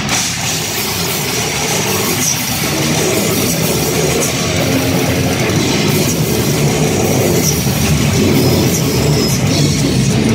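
A heavy metal band playing live and loud: distorted electric guitars, bass guitar and a drum kit. The band grows fuller and slightly louder about a couple of seconds in.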